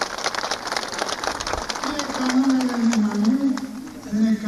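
A crowd applauding, a dense patter of hand claps, with a man's voice rising over the clapping about halfway through.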